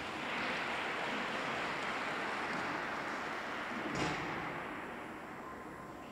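Audience applause echoing in an ice rink. It swells as it begins, holds, and then fades, with one sharp knock about four seconds in.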